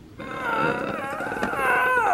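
A man's long, strained groan, "ughhh", as he is being choked, starting just after the beginning and held with a wavering pitch.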